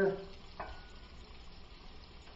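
Filet steaks frying in garlic butter in a lidded pan: a faint steady sizzle, with one light knock about half a second in.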